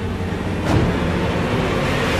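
Steady low rumble of a steam train in a film trailer's sound mix, with a swell a little under a second in.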